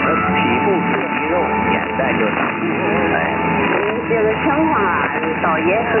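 Distant medium-wave AM broadcast heard through a shortwave-style receiver, with music and voices mixed together in narrow, telephone-like audio and a steady heterodyne whistle from co-channel interference.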